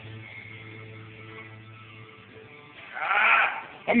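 A person's loud, drawn-out shout with a wavering pitch, about three seconds in, lasting under a second, over quiet background music.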